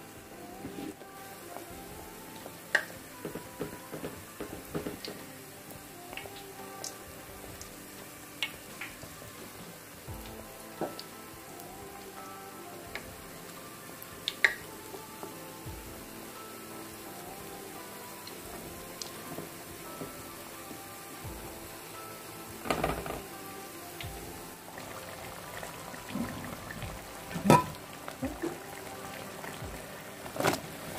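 Potato pirozhki deep-frying in hot oil in a stainless steel pot: a steady crackling sizzle scattered with sharp pops, with a few louder clicks and knocks in the second half. Soft background music plays underneath.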